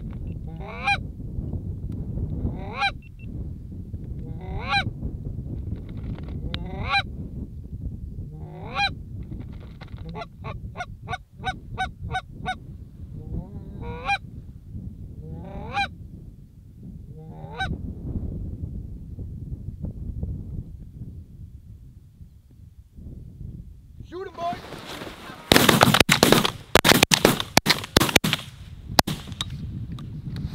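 Canada geese honking, one call about every two seconds, with a quick run of honks around ten to twelve seconds in. Near the end comes a volley of loud shotgun blasts, many shots within about three seconds.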